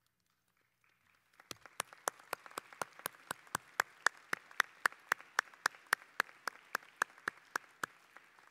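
Applause from a sparse crowd in a large arena, starting about a second and a half in. One pair of hands close to the microphone claps steadily at about four claps a second over the fainter clapping of the rest.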